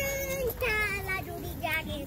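A child singing a wordless tune in held notes, the pitch stepping down about half a second in, with more short sung notes after, over low background noise.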